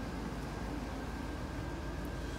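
GMC Suburban engine idling steadily, heard from inside the cab as an even low pulsing hum, with a faint steady whine above it.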